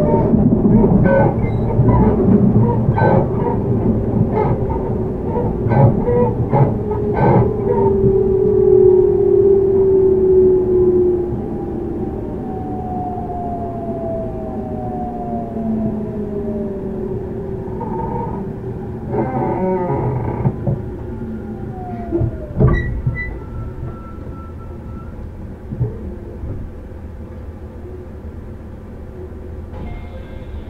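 Interior sound of a JR Central 313 series electric train slowing under braking. The tones of the Toshiba IGBT inverter and motors fall steadily in pitch, and the rail-joint clicks come further apart. About 22 seconds in there is a sharp clack as the train comes to a stand, leaving a quieter steady hum.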